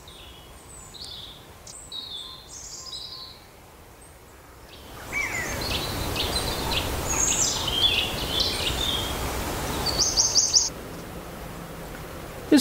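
Small birds calling and chirping in short high notes over quiet outdoor ambience. About five seconds in, a steady rushing noise comes up under the calls and stays until near the end, and just before it drops away a bird gives a quick run of four or five chirps.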